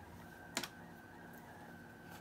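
A single short click, with a smaller tick just after it, about half a second in, over quiet room tone: handling noise from fingers winding a tzitzit string around the other strings.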